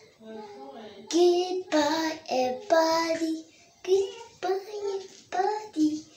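A young girl singing on her own, a run of loud held notes that begins about a second in.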